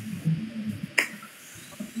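Ulike IPL hair-removal handset firing once: a single sharp click about a second in.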